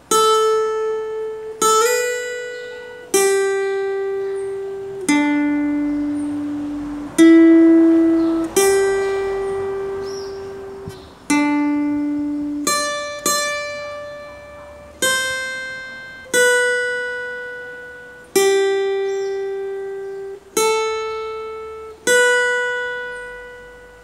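Acoustic guitar playing a slow single-note melody with a pick: about fifteen notes, each picked once and left to ring and fade for one to two seconds. It is the solo phrase being played through slowly from its start.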